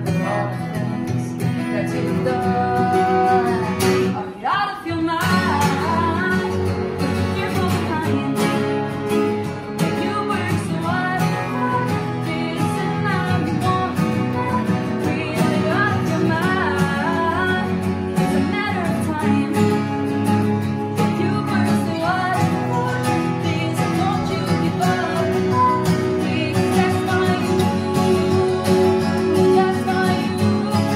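A woman sings with two Taylor acoustic guitars playing along, one hers and one a second player's, in a steady, unamplified performance. There is a brief dip in the playing about four and a half seconds in.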